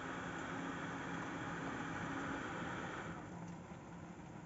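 Desktop PC cooling fans (Intel stock CPU cooler and graphics card fan) running with a steady whir and faint hum, becoming quieter about three seconds in.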